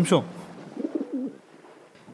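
Pigeons cooing from a large flock: a few low, rolling coos in the middle, following a short spoken word at the start.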